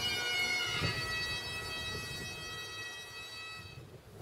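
Bagpipes playing held notes over their steady drones, with a brief falling note change about a second in. The sound fades and stops just before the end.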